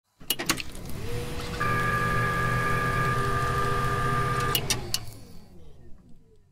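Logo intro sound effect. A couple of sharp clicks lead into a steady mechanical whir with a high whine for about three seconds. It ends in a few more clicks and fades away.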